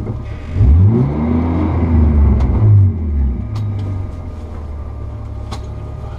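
BMW E36 rally car's engine heard from inside the cabin, revving up steeply about half a second in, held high for about two seconds, then dropping back to a steady idle. The car barely moves while it revs, fitting a broken left half-shaft that leaves the engine driving nothing.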